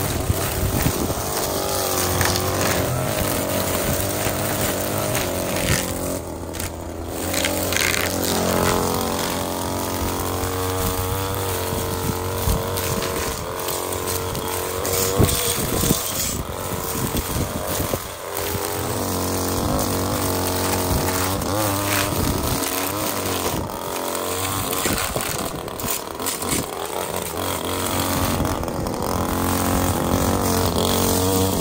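Gas-powered string trimmer's small engine running hard as the line cuts grass along an edge. The engine pitch rises and falls as the throttle is eased off and opened again, with a few brief dips.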